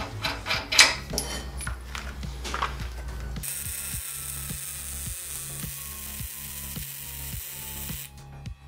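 Metal parts knocking and clinking as a brake caliper is fitted to the axle bracket. From about three and a half seconds in, an electric welding arc hisses steadily on the steel frame. A steady low beat, most likely background music, runs underneath.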